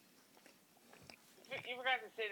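Faint chewing of a mouthful of pizza, with a few soft mouth clicks, then a voice starts about one and a half seconds in.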